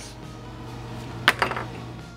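Two quick, sharp clinks of hard objects knocked together on a workbench, about a second and a quarter in, over quiet background music.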